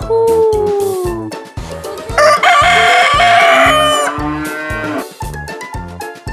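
A rooster crowing once, about two seconds in, for about a second and a half, over background music with a steady beat. A gliding tone rises and then falls away during the first second.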